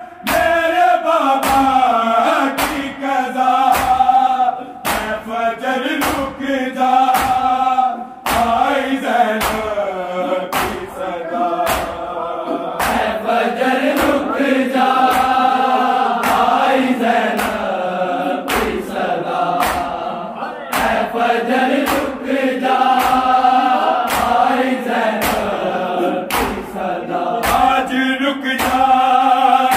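A group of men chanting a noha, a Shia lament, in unison, over matam: bare hands slapping bare chests together in a steady, even rhythm of sharp claps.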